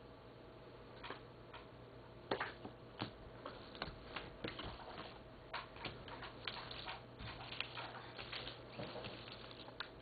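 Round cardboard cards being picked up, flipped over and set down on a wooden table: faint, scattered light clicks and taps.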